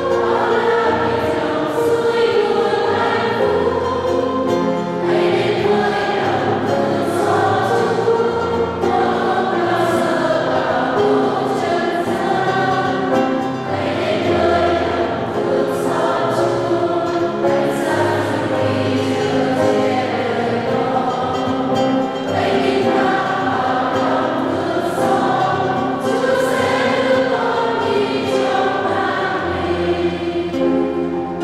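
Church choir singing a hymn, accompanied by piano and acoustic guitar.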